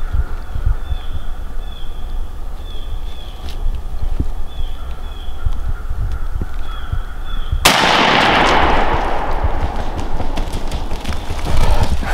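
A single shotgun shot about seven and a half seconds in, its loud noise dying away slowly over the next few seconds. Before it, a low rumble on the microphone with faint, repeated high bird calls.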